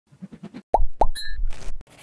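Cartoon logo sound effects: a few soft taps, then two quick rising plops about a quarter second apart over a low rumble, followed by a brief high chime.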